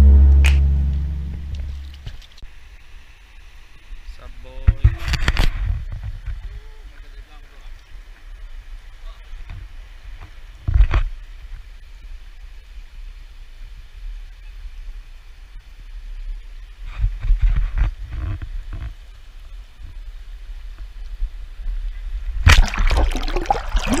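Shallow river water sloshing and flowing around an action camera held low at the water, with wind rumble, handling knocks and a few faint voices. Near the end, loud splashing as the camera dips into the water.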